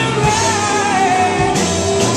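Rock band playing live: a male singer holds one long wavering note that slides slightly down, over guitars, bass and drums, with cymbals washing in near the end.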